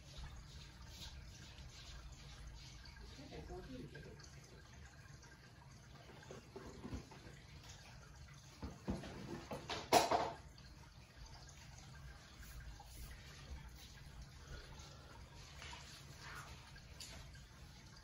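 Quiet room tone with a low steady hum and faint, distant sounds of someone moving about, broken by one sharp knock about ten seconds in.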